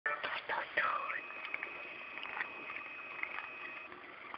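A cat chewing and licking a piece of chicken taken from fingers: small soft clicks and smacks, with a whispered voice in the first second or so.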